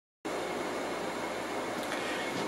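Steady background hiss of room noise, starting after a brief moment of silence at the very beginning.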